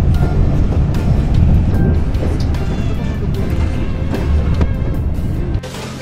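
Steady low rumble of a moving passenger train heard inside the carriage, with background music over it; the rumble cuts off abruptly near the end.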